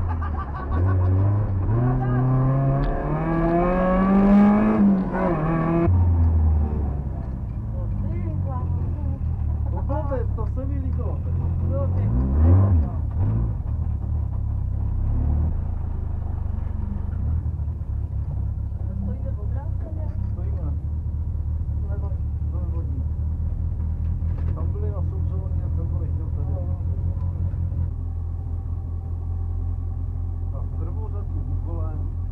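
Škoda 130 rally car's rear-mounted four-cylinder engine heard from inside the cabin. It revs up hard over the first few seconds and drops off about five seconds in. It gives a short rev blip about twelve seconds in, then runs at a steady idle.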